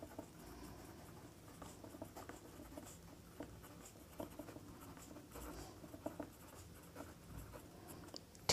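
Ballpoint pen writing on paper: faint, irregular scratching strokes with small taps as letters are formed.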